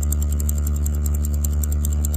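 Steady low electrical mains hum, with a rapid run of faint high clicks at about ten a second from a computer mouse's scroll wheel being turned.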